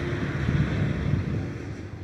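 Outdoor background noise: an even rushing hiss that fades gradually over the two seconds.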